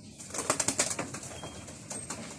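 A pigeon taking off from its nest: a quick burst of loud wing flaps starting a moment in, fading within about a second as it flies away.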